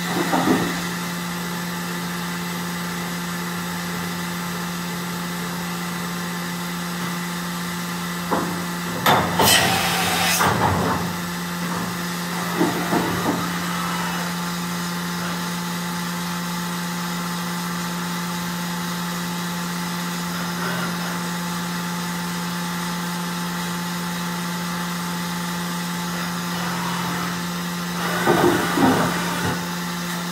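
OKK VB-53 vertical machining center powered up with a steady hum, its table traversing in three louder bursts of motion noise with sliding way covers: about nine seconds in, again around thirteen seconds, and near the end.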